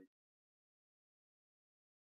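Near silence: the sound track drops to complete silence just after the tail of a spoken word at the very start.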